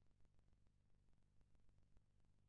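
Near silence: a faint steady low hum with faint scattered ticks.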